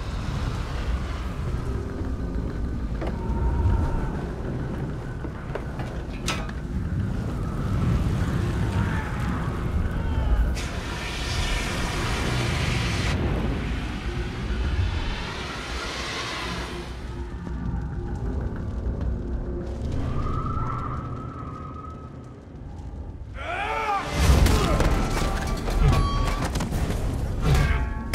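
Dramatic film soundtrack: music over a deep, booming rumble. About 24 seconds in, a sudden burst of loud hits and crashes starts.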